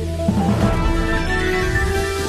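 Theme music of a news programme's title bumper: sustained synthesised chords over a steady bass, with a new chord coming in about a second in.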